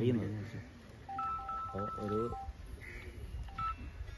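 Short electronic beeps on two alternating pitches for about a second and a half, with a brief repeat near the end, sounding over a man's speech.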